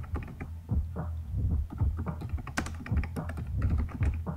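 Computer keyboard being typed on: a quick, irregular run of key clicks over a low steady hum.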